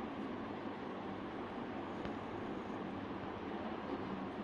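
Steady background noise, an even hiss and hum with no clear pitch, and a faint click about halfway through.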